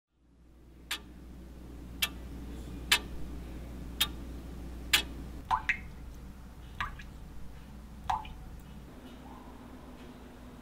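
A clock ticking about once a second, five sharp ticks, over a low hum. From about halfway, water drips from a kitchen faucet in a few slow, separate plinks.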